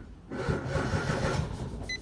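Datsun GO's three-cylinder petrol engine being cranked by its starter motor, turning over without catching. The battery is low, in the mechanic's words. A short electronic beep near the end.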